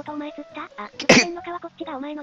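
A voice talking steadily, with one short, loud noisy burst about a second in.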